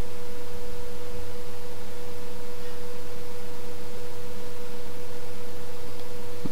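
A steady electronic tone, a single unwavering mid-pitched note, over a low electrical hum.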